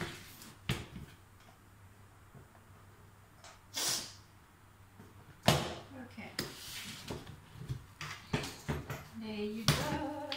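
Hard-shell suitcase being unlocked and opened: scattered clicks from its combination lock and latch, the loudest a sharp click about halfway through, then scraping like a zip being pulled and a run of small clicks. A brief voice comes in at the very end.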